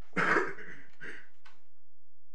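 A person clearing their throat in a quiet courtroom: one loud, rough clear about a quarter second in, followed by two softer short ones.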